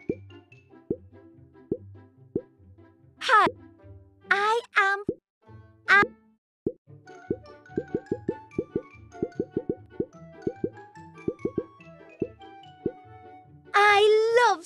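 Children's cartoon soundtrack: light plucked notes and popping sound effects, with three short, high, squeaky voice exclamations about three to six seconds in, then a quick run of popping notes to a small melody.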